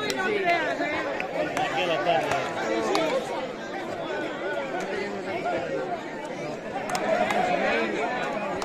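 Crowd of spectators chattering, many voices talking over one another at once.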